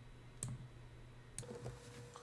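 Two computer mouse clicks about a second apart over a faint low hum, with a faint steady tone coming in near the end.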